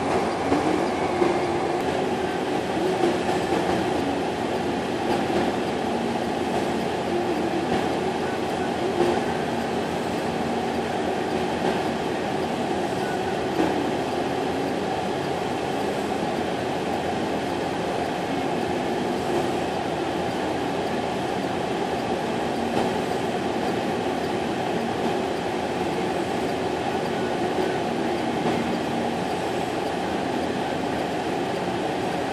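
Diesel power pack of a self-propelled modular transporter running steadily while the multi-axle heavy-haul trailer creeps along under load, a continuous even drone with no change in pitch.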